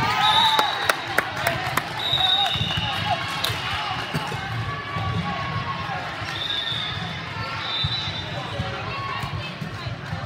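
Volleyball players' sneakers squeaking on a gym floor and the ball smacking and bouncing, with sharp hits bunched in the first few seconds and a few short squeaks later on, under voices chattering in the hall.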